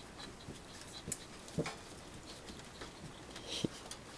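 Toy poodle puppies shuffling about on a quilt: quiet scuffling and light ticks, a few soft knocks, and brief faint high peeps from the puppies.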